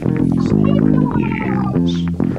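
Rock music: a band passage with bass guitar and guitar chords over percussive hits, no singing.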